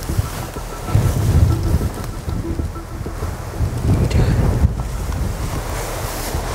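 Wind buffeting the camera microphone in uneven gusts, a heavy low rumble that swells about a second in and again near four seconds.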